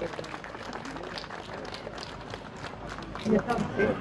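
Small crowd applauding, with irregular hand claps, and a voice speaking briefly near the end.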